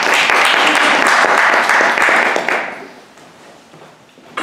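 A small group applauding, the dense clapping fading out about three seconds in.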